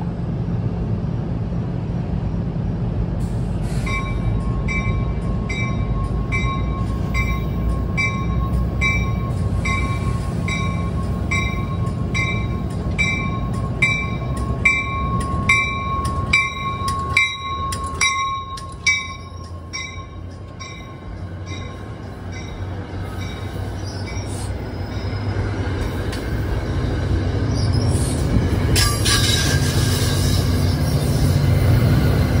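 NJ Transit commuter train arriving at a station platform: a low rumble of the passing cars, a bell ringing about twice a second and a steady high brake or wheel squeal, both stopping about two-thirds of the way through as the train comes to a halt. The rumble rises again near the end.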